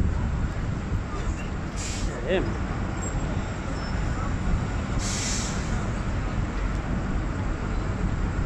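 City traffic: a steady low rumble of vehicles, with a short hiss near two seconds in and a stronger one about five seconds in.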